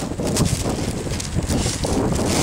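Wind buffeting the camera microphone outdoors: a steady low rumble with some scattered scuffs and rustles.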